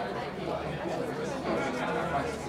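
Indistinct chatter of several people talking at once in a large meeting room, over a steady low hum.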